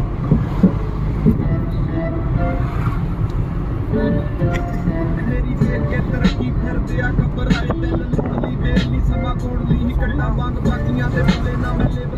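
Inside the cabin of a moving Suzuki car: steady low road and engine rumble at highway speed, with faint music or voices over it and a few light clicks.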